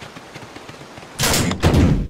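A loud, rattling cartoon sound effect, lasting under a second, starting a little past halfway.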